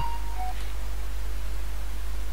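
Steady low hum with faint hiss: the background noise of the narrator's recording setup, with no keystrokes.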